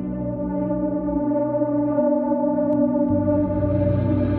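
Ambient electronic music: layered, sustained drone tones held steady, with a deep low note coming in about three seconds in.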